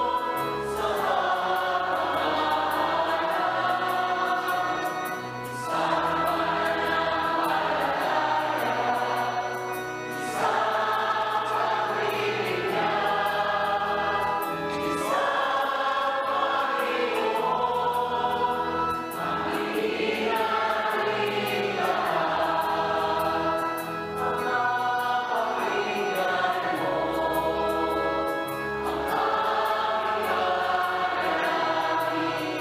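A choir sings a Tagalog hymn with musical accompaniment, in long phrases broken by short pauses every few seconds.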